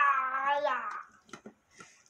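A cat meowing once, a single long call of about a second, followed by a few faint clicks from the metal hand juicer as an orange half is twisted on it.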